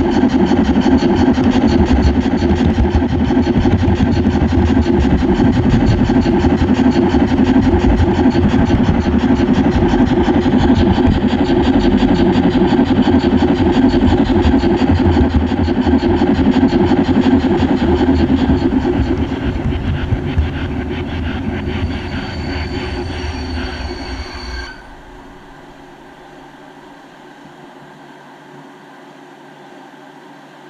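O-scale model steam train running along the track, heard close up from a camera riding on it: a loud, steady rolling and gear noise. It eases off after about 19 seconds and cuts out about 25 seconds in as the train stops, leaving a faint steady hum.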